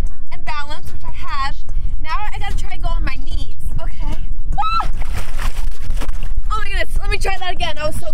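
Voices exclaiming over a steady low wind rumble on the microphone, with a splash of water about five seconds in as the rider tips off a boogie board.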